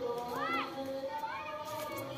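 Children's voices calling and shouting, with a short rising-and-falling call about half a second in and another shorter one about one and a half seconds in.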